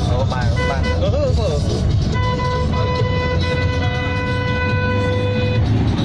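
A vehicle horn sounds one long, steady note for about three and a half seconds, starting about two seconds in. It plays over the low rumble of engine and road noise heard from inside a moving car.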